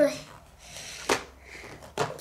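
Plastic Mini Brands surprise capsule being pried open at its seam with a fingernail: faint scratching with one sharp click about a second in as the shell gives.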